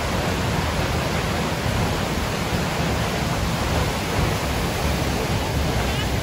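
Steinsdalsfossen waterfall heard from the path right behind its falling curtain of water: a loud, steady rush of falling water.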